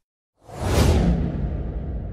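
Whoosh sound effect: a rush of noise that swells in about half a second in, then slowly dies away, its hiss sinking in pitch over a low rumble.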